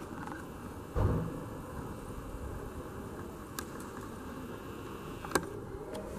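Steady low outdoor background noise, with a short, dull low thump about a second in and two faint clicks in the second half.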